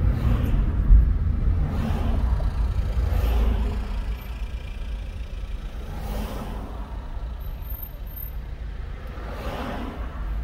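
Car driving in slow traffic heard from inside the cabin: a steady low rumble of engine and road noise that eases off about four seconds in as the car slows down.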